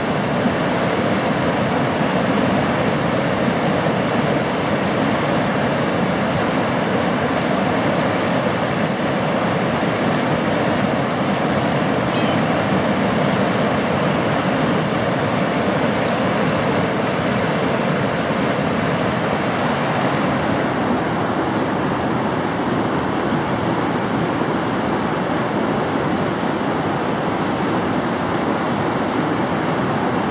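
Fast mountain river running over rocks: a loud, steady rush of white-water rapids.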